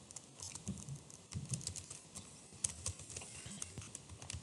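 Computer keyboard being typed on: a quick, irregular run of faint keystrokes.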